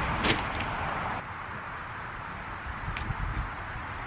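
Handling noise from shopping bags and purchases being unloaded: a loud, even rustle that stops abruptly about a second in, a sharp click just after the start, and another click near three seconds.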